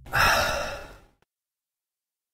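A person lets out one breathy sigh, lasting under a second and fading out.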